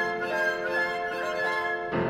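Classical chamber trio of flute, violin and piano playing continuously, with the violin prominent over the piano as the notes move quickly.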